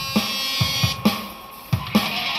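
A programmed drum beat with a regular kick drum and cymbals plays under an electric guitar. The guitar drops away about a second in, leaving the beat quieter on its own for a moment, and then the full level comes back near the end.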